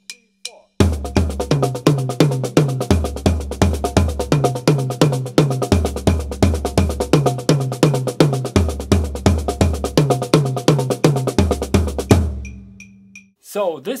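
Drum kit played fast: single paradiddles in triplets on the snare drum, with the accents orchestrated on the toms (right-hand accents on the floor tom, left-hand accents on the small tom) at about 170 beats per minute. The playing starts about a second in and stops a couple of seconds before the end, with the toms ringing on briefly.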